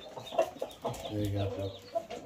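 Rooster clucking in short calls, with a low, steady hum-like tone held for just under a second about halfway through.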